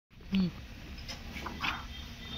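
A short, low vocal sound with a falling pitch near the start, then scattered light clicks and knocks as hands and tools work on a car's front suspension strut and hub.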